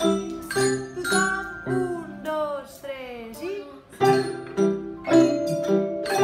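A children's ensemble of Orff xylophones and metallophones plays a repeating mallet pattern with bass notes. Near the middle the bars drop out for about two seconds while a few gliding, swooping vocal sounds fall and rise in pitch. The mallet pattern then comes back in.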